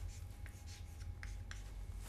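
Chalk writing on a blackboard: a few faint short scratching strokes as a brief expression is chalked up.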